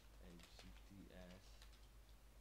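Faint keystrokes on a computer keyboard as a command is typed.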